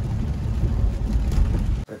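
Low, steady rumble of a car driving on a rain-wet street, heard from inside the cabin; it cuts off abruptly near the end.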